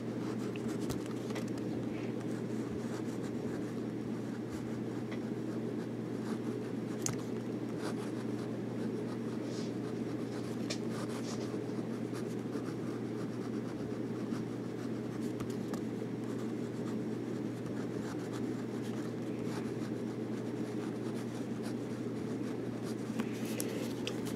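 Monteverde Invincia ballpoint pen writing on paper: faint, light scratching of the ball tip in short strokes, the pen gliding smoothly without being pressed hard. A steady low hum runs underneath.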